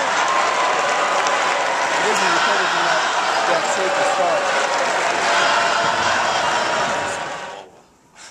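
A basketball crowd cheering and shouting, many voices over one another with applause. It stops abruptly near the end.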